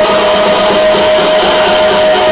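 Loud music, with guitar, played at high volume through a home speaker wall: a tall cabinet fitted with about two dozen subwoofers. It plays steadily, with a strong held tone running through it.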